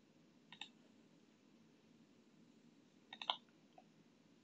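Computer mouse button clicks over faint room hiss: a quick double click about half a second in, then a cluster of two or three clicks about three seconds in and a lighter single click just before the end.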